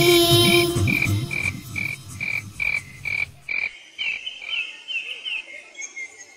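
Night ambience of frogs croaking in a steady pulse about twice a second, the calls turning more wavering after about four seconds. The children's song's backing music fades out under it over the first three to four seconds.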